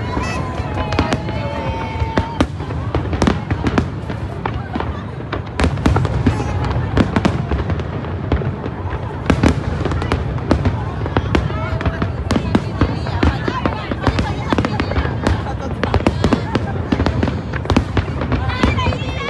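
Aerial fireworks display: a rapid, irregular stream of bangs and crackles over a continuous low rumble.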